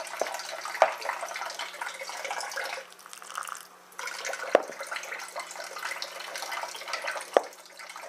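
Fingers working water into crumbly shortcrust pastry mix in a bowl, a continuous rustling and squelching as the dough starts to clump. Three sharp knocks against the bowl come near 1 s, in the middle and near the end.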